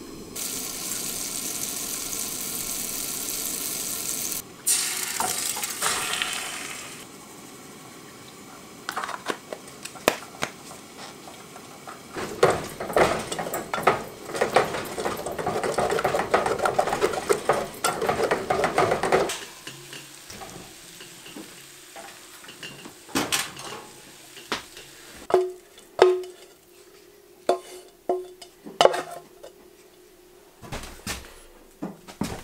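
Scrambled eggs sizzling in a steel pot on a camp stove while being stirred and scraped with a wooden spoon, then scattered clinks and taps of utensils and a plate near the end. A steady hiss fills the first few seconds.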